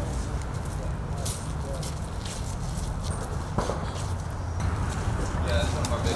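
Outdoor ambience with a steady low rumble, faint talk from people nearby and scattered clicks and knocks. A sharp knock comes about three and a half seconds in.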